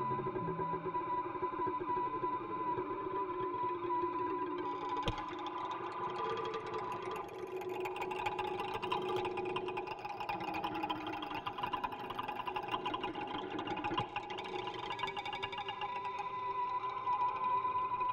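Layered experimental music from software instruments (harps, strings and a synth lead) played back with heavy echo effects: a steady high drone tone under dense, shimmering plucked textures. A sharp click cuts through about five seconds in and again near fourteen seconds.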